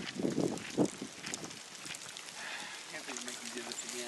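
Men's voices: laughter and talk trailing off in the first second, then a faint voice with a wavering pitch near the end. Light footsteps on pavement run under it.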